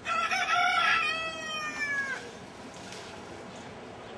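A rooster crowing once: a single loud call of about two seconds whose pitch drops at the end.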